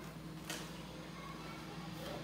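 Quiet stretch with a faint steady low hum and one light knock about half a second in, from a plastic electric drip coffee maker being turned over in the hands.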